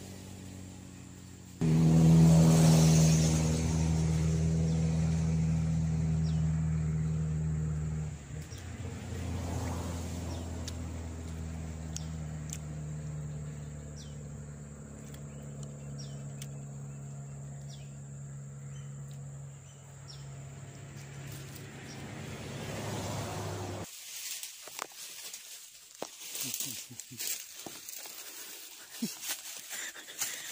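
Motor vehicle engines on a nearby road. One engine comes in suddenly and loudly about two seconds in, runs at a steady pitch, shifts around a third of the way through and carries on more quietly. Near the end the engine sound cuts out, leaving light rustling and clicks.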